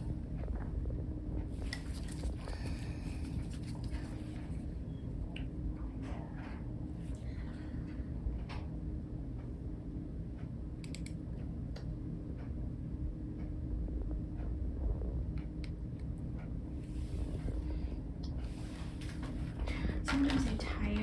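Surgical scissors snipping the sutures of a neck drainage tube: scattered small clicks and snips over a steady low hum of room equipment.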